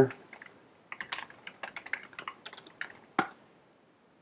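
Typing on a computer keyboard: a quick, uneven run of keystrokes starts about a second in, ending with one louder click just after three seconds.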